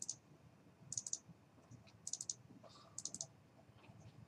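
Computer mouse clicking: four short bursts of quick clicks, about one a second.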